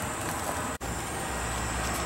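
Screw press running steadily: a low machine hum with a momentary break just under a second in, the hum growing stronger about halfway through.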